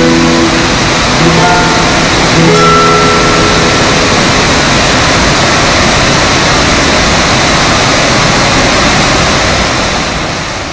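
A few last guitar notes ring out over the steady rush of a waterfall. The waterfall goes on alone from about four seconds in.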